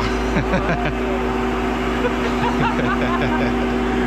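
Tanker truck's engine running at a raised idle to drive its trailer product pump during unloading: a steady drone with a constant hum. Voices talk over it.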